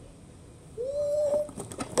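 A child's brief drawn-out hum, about a second in, rising then held on one note, between spoken phrases.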